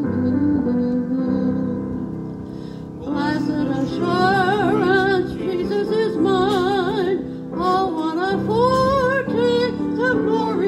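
An electronic keyboard plays a hymn introduction. About three seconds in, a woman's voice joins, singing the melody with a wide vibrato, amplified through a microphone and small PA.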